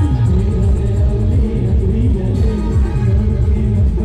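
Loud timli band music with a heavy bass line that falls in pitch in short, quickly repeated phrases over a steady beat.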